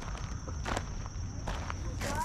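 Footsteps on a gravel path, one step about every three-quarters of a second.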